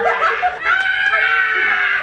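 A group of young adults laughing loudly together, with a long, high-pitched shriek of laughter through most of the middle.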